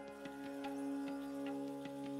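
Background music: a steady held drone with a light ticking beat of about two and a half strokes a second.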